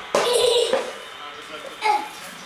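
A short burst of a person's voice, most likely a child's, just after the start, and another brief one near the end, with no clear words.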